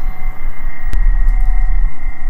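Wind buffeting the microphone: a loud, fluttering low rumble that peaks about a second in, over a faint steady high whine.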